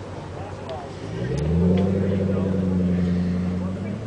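A vehicle engine revving up about a second in, then holding a steady low note for a couple of seconds before dropping away near the end, over background chatter.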